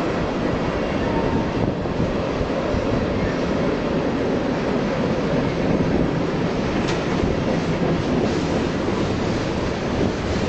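Freight train rolling past, a steady loud noise of railcars and wheels running on the rails.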